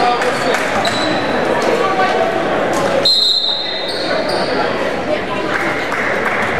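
Crowd chatter echoing in a large gymnasium during a basketball game, with a basketball bouncing on the hardwood and a few short high-pitched squeaks.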